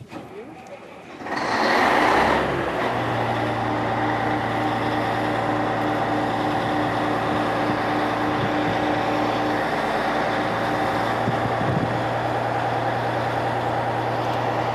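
Tracked excavator's diesel engine running at a steady speed, coming in loud about a second and a half in and then holding an even hum.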